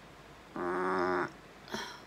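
A woman's low, steady groan of pain, held for under a second, from a headache coming on behind her eye. A short breathy sound follows near the end.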